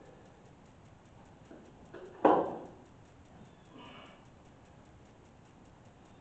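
A single sharp knock about two seconds in, with a couple of fainter knocks just before it, as a glued PVC fitting is pushed onto a vent pipe overhead.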